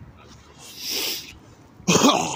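A man coughing and gagging, his throat burned by a drink: a breathy, rasping cough about halfway through, then a louder, strained cough near the end.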